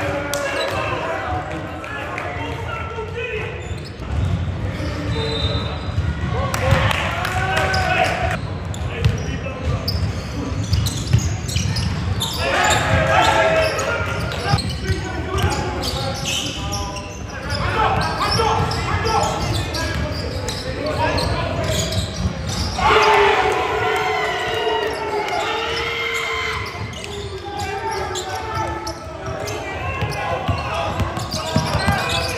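Basketball being dribbled on a hardwood court during live play, with players' shouts and calls in between, echoing in a large sports hall.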